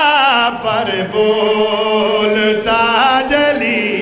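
A man's solo voice singing a verse of a qasida in a drawn-out, ornamented style: long held notes that waver, with slides in pitch, one rising near the end.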